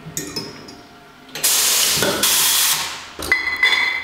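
Two short bursts of hissing from the bottling equipment, each about half a second, then glass wine bottles clinking together several times near the end.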